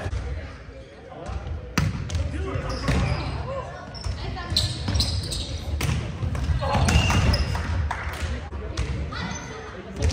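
Indoor volleyball rally in a gymnasium: several sharp smacks of hands and forearms striking the ball, the loudest a little under two seconds in, with players' voices and calls between the hits.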